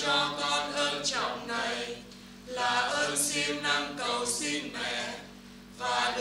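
A group of voices chanting a prayer together in Vietnamese, without accompaniment, in phrases with a short breath pause about two seconds in and another near the end.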